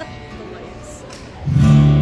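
Acoustic guitar: after a quieter stretch, a chord is strummed about one and a half seconds in and rings on loudly, opening the next song.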